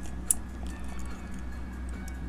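A few light clicks of 40% silver Kennedy half dollars knocking against each other as they are fanned in the fingers, the sharpest about a third of a second in, over a steady low hum.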